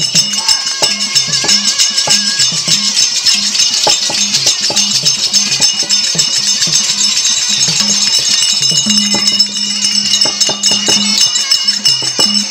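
Therukoothu folk-drama accompaniment: steady drum strokes over held instrumental tones and a stepping low note, with the dancers' ankle bells jingling in time with their steps.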